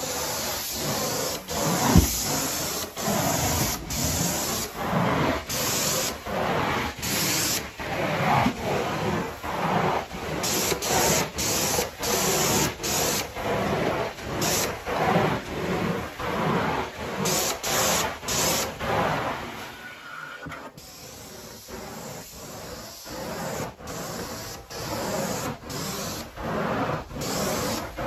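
Carpet-cleaning work: a spraying, rubbing hiss repeating in even strokes, a little more than one a second, softer for the last few seconds.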